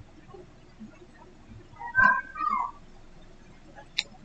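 Two short high-pitched cries in quick succession about two seconds in, the second bending in pitch, over quiet room tone; a single sharp click near the end.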